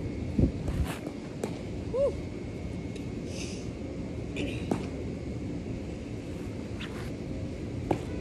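A few sharp pops over steady outdoor background noise, the sharpest near the end: a thrown baseball smacking into a leather glove.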